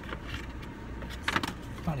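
A brief rustle of a paper shopping bag being handled, about a second and a half in, over the low steady hum of a car interior.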